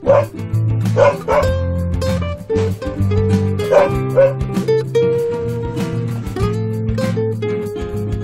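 A dog barking in short pairs of barks, over steady background music.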